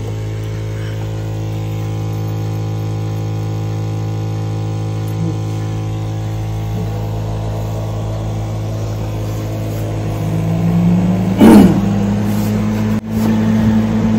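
Steady electrical hum from dental lab machines. From about ten seconds in, a motor tone rises slightly and then holds as the CEREC SpeedFire sintering furnace starts to lift the crown into its chamber. A brief louder sound comes near the end.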